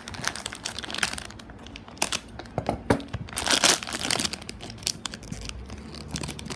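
Foil blind-bag packet crinkling as it is handled and pulled open by hand, in irregular crackles that are loudest a little past halfway through.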